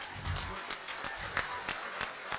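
Hand clapping at a slow, even pace of about three claps a second, with faint room noise behind.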